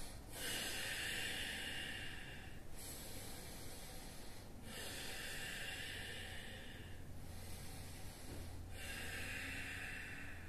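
A man breathing slowly and deeply while holding a yoga pose. The breaths are faint and hissy, each lasting about two seconds, in a steady in-and-out rhythm.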